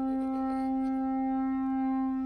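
One long, steady horn-like note from a wind instrument, held at a single pitch without a break.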